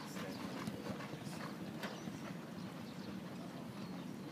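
Racehorses' hooves on the dirt track, a run of irregular hoofbeats strongest in the first two seconds over a steady low background rush.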